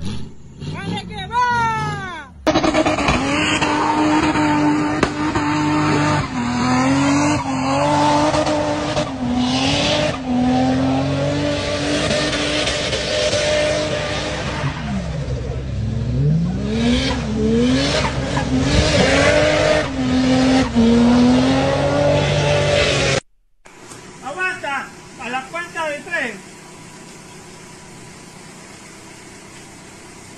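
A motor vehicle's engine revving hard for about twenty seconds, its pitch held high, dipping and climbing again several times. It cuts off suddenly, leaving a few faint voices and a steady low hum.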